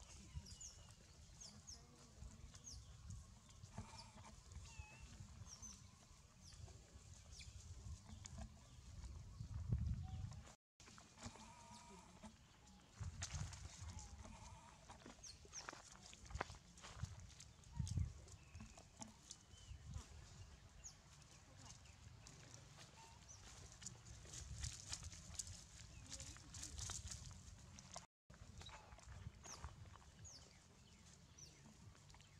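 Faint outdoor sound around a troop of long-tailed macaques: a low rumble with scattered light taps and rustles, and a few short, soft monkey calls. The sound cuts out completely for a moment about a third of the way in and again near the end.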